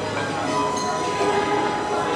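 Violin playing long held notes over a recorded backing track.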